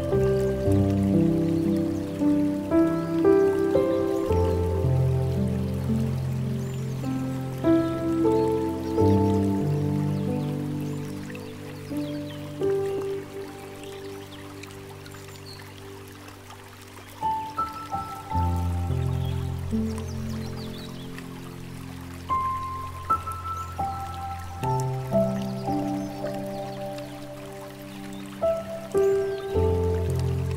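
Slow, gentle solo piano music with long, low bass notes, over a soft trickle of water from a bamboo fountain. The piano thins out and grows quieter about halfway through, then picks up again with a new low note.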